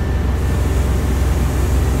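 CNC twin-spindle lathe running with a steady low hum as its sub-spindle draws the tube stock out of the main spindle. A faint hiss comes in about half a second in.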